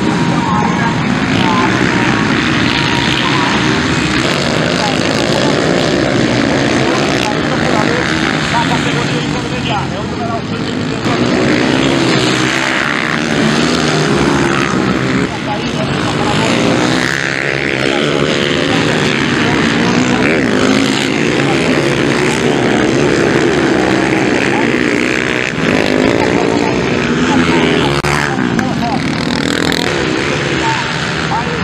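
Several dirt bike engines running at race speed, rising and falling as the riders accelerate and back off, with a commentator's voice over them.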